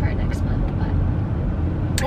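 Steady low rumble of a car's road and engine noise inside the cabin while driving.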